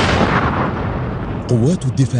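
Explosion sound effect from a military promo: a loud blast rumble that dies away over about the first second and a half, after which a man's narrating voice comes in.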